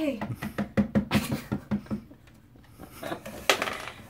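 A woman's voice makes a quick run of short, evenly spaced sounds for about the first two seconds. A single sharp click comes about three and a half seconds in.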